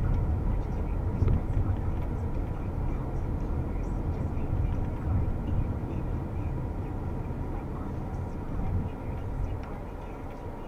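Car cabin road and engine noise at low speed, a steady low rumble that eases off near the end as the car slows.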